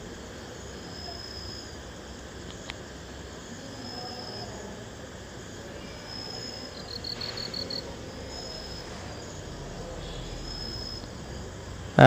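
Crickets chirping at night over a low steady hiss: short high chirps every second or two, with a quick run of pulses about seven seconds in. A single faint click comes about two and a half seconds in.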